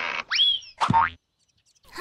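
Cartoon sound effects of an arrow shot from a bow. A short rush of noise is followed by a rising, springy boing-like twang, then a sharp hit just under a second in.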